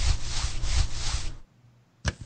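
Cartoon sound effect for thermal-vision goggles switching on: a loud, rasping whir lasting about a second and a half, swelling a few times before it stops.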